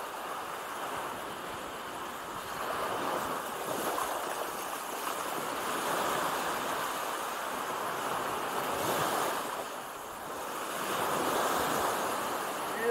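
Small sea waves breaking and washing up a sandy beach around wooden groyne posts. The surf rises and falls in several swells, the loudest about halfway through and near the end.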